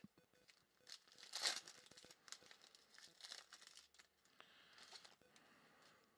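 Faint crinkling and rustling of a foil trading-card pack being torn open and the cards handled, in short scattered bursts, the loudest about one and a half seconds in.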